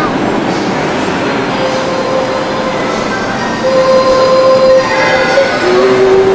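Running noise of a moving rail car heard from on board, with a steady whine that sets in about a quarter of the way through and holds for several seconds.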